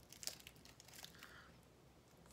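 Faint crinkling of a small candy's wrapper being picked open by hand, a few quick crackles in the first second or so.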